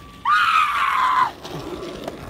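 A single high-pitched scream, about a second long, that breaks in sharply and then slides slowly down in pitch.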